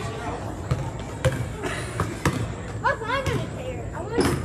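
A basketball being dribbled on a gym floor, repeated sharp bounces echoing in the large hall. High-pitched voices call out about three seconds in.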